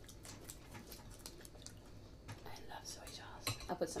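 Quiet table sounds of people eating: scattered small clicks and mouth noises, with a louder cluster of clicks and a few spoken words near the end.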